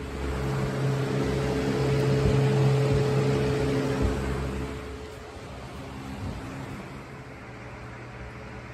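Plastic box fan running, a steady rush of air over a low motor hum, loud close to the grille. About five seconds in it falls to a quieter, steadier air noise.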